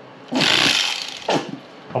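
Electric fillet knife running in a burst of about half a second as it cuts through a crappie fillet on a wooden cutting board, a motor buzz over the blade's rasp. A shorter burst follows about a second later.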